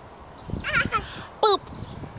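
A toddler's high-pitched squealing laughs while being pushed on a swing: one wavering squeal about half a second in and a shorter one near one and a half seconds.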